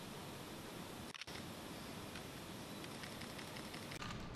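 Faint room tone with a few scattered camera shutter clicks from press photographers, and a brief gap in the sound about a second in.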